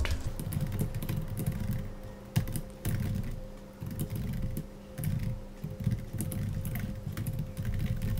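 Typing on a computer keyboard: quick, irregular key clicks, with a steady low hum underneath.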